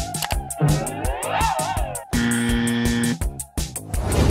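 Upbeat electronic background music with a steady beat, with a wavering, up-and-down gliding effect about a second in and a held steady tone for about a second after that.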